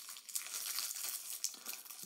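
Thin plastic snack-cake wrapper crinkling as it is peeled open by hand, a light continuous crackle.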